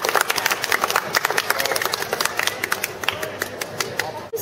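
Crowd applauding: many hands clapping at once, with a few voices underneath.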